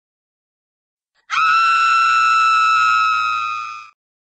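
A woman's long, high-pitched scream that starts suddenly about a second in, swoops up and holds one steady pitch for over two seconds, then cuts off just before the end.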